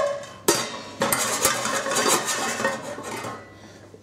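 Metal lid of a stainless steel pan clinking and clattering against the pan: sharp knocks at the start and about half a second in, then about two seconds of rattling and ringing metal.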